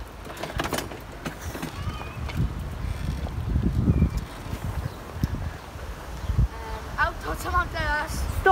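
Irregular low rumble and rattle of a four-wheel pedal cart rolling along a paved path, with wind buffeting the microphone. A child's voice comes in near the end.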